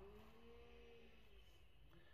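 Near silence: faint room tone inside a car cabin.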